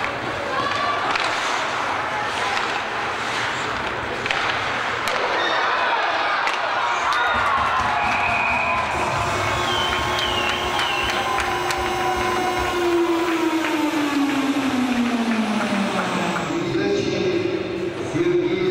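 Ice hockey arena sound during a rush on goal and the celebration that follows: steady crowd noise mixed with voices, a few sharp clicks of play in the first seconds, and a long tone that slides down in pitch about two-thirds of the way through.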